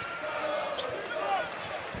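A basketball being dribbled on a hardwood court, over the steady background noise of an arena crowd.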